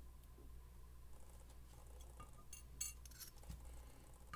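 Faint small metallic clicks and clinks of steel tweezers working pins and a spring out of a lock cylinder's pin chamber. A few come in quick succession a little past halfway.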